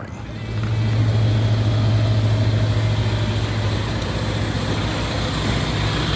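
An engine idling steadily: a low, even hum that comes up within the first second and then holds.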